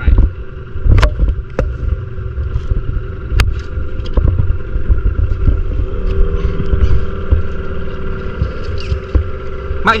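A small boat's outboard motor running steadily at low speed, with wind buffeting the microphone. A few sharp knocks come about one second in and again a little over three seconds in.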